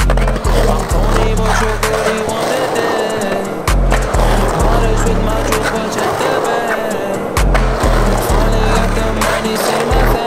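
Hip-hop track with deep, repeated bass notes, mixed with a skateboard's wheels rolling on concrete and sharp clacks of the board.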